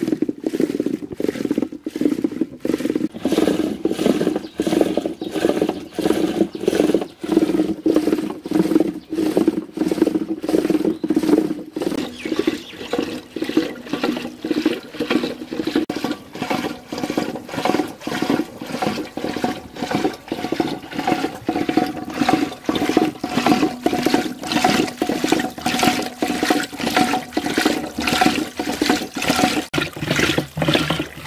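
Wooden churning stick spun back and forth by a pull-rope in a metal pot of yogurt, sloshing rhythmically at about two strokes a second: yogurt being churned into ghol.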